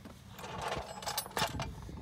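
Metal clinking and scraping as a steel sector shaft brace is slid into place against the frame and bolts, with a few sharp clinks in the second half.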